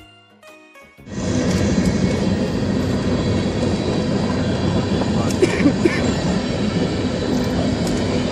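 A short music jingle ends about a second in. Then comes the loud, steady noise of a freight train of covered hopper cars rolling through a level crossing.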